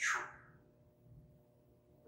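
A man's short breathy sound, falling in pitch, in the first half second, then near silence with faint room hum.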